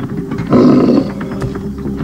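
A deep grunting call, sound-designed for a reconstructed Diprotodon: one loud grunt about half a second in, lasting about half a second, over a steady low background tone.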